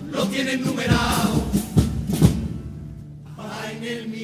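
Male chirigota chorus singing a Cádiz carnival pasodoble in unison, backed by guitar, with a few bass drum beats in the middle. The voices thin out briefly near the end before the next line starts.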